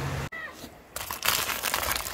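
Plastic food packaging crinkling and rustling as a hand rummages through a bag, starting about a second in.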